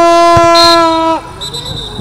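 A horn held in one long, loud blast at a single steady pitch that cuts off suddenly about a second in, with a short thump partway through the blast.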